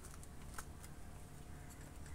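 Faint small clicks and knocks of hands handling a chainsaw that is not running, over a steady low hum.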